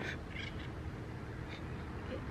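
Quiet outdoor background: a low, steady rumble with a few faint, brief sounds in it.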